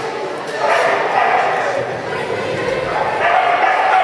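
A dog barking several times as it runs an agility course, with the handler's voice calling commands over it.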